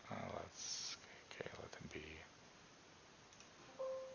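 Quiet, breathy muttering and a few light clicks, then near the end a short single-pitched chime that fades over about a second: the Windows warning sound as a 'file already exists, do you want to replace it?' dialog pops up.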